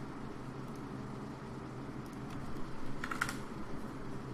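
A few computer keyboard clicks, a short cluster of them about three seconds in, over a steady low hum.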